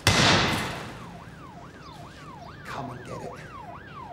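A bat smashing into a car with a loud crash that trails off over about a second. A police siren wails in quick rise-and-fall sweeps underneath, police backup on its way.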